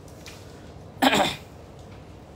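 A single short, sharp cough about a second in, over steady room hum.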